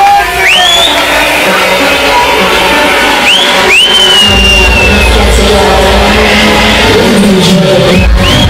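Loud club music with a heavy bass beat that comes in about halfway through. A few high whoops from the crowd ride over it.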